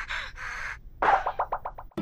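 Short breathy puffs of noise, then about a second in a cartoon comedy sound effect: a quick run of about six short pitched notes, each falling and dying away.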